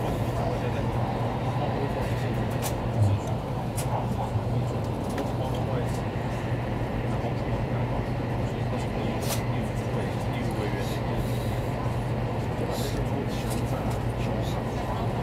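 Steady running noise inside the cabin of a Taiwan High Speed Rail 700T electric train at cruising speed: a constant low hum over a rushing noise. A few light clicks and a brief low thump about three seconds in.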